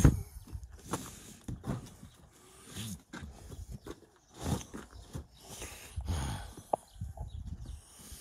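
Cut firewood logs being handled and lifted out of a car's back seat: irregular scuffs, rustles and knocks of wood against the car's interior, with one sharp knock near the end.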